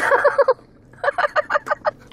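A person's high-pitched laughter in two quick runs of short pulses, a brief burst at the start and a longer one of about seven pulses from about a second in.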